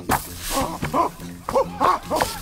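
Cartoon cavemen grunting and hooting in a quick string of short calls that rise and fall in pitch, several a second.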